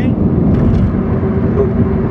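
Steady low road and engine noise inside a moving car's cabin, its tyres running on a concrete highway.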